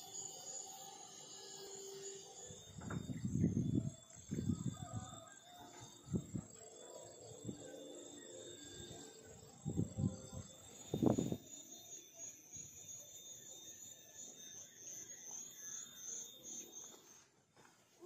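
Roosters crowing, a series of calls, the loudest about three seconds in and again about eleven seconds in, over a steady high-pitched hiss.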